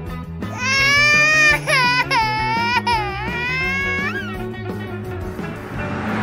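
A high-pitched crying wail, like a cartoon baby crying, rising and falling in pitch from about half a second in until about four seconds, over steady background music.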